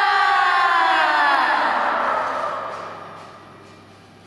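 A group of girls' voices together calling out one long cry whose pitch falls slowly, fading away about three seconds in.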